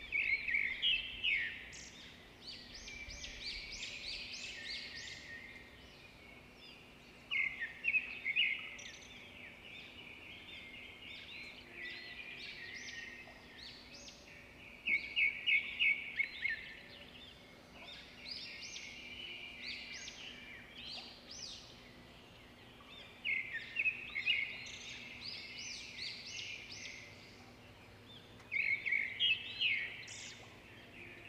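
Birds chirping and singing in repeated bursts of quick high notes every several seconds, with quieter chirping in between, over a faint steady hum.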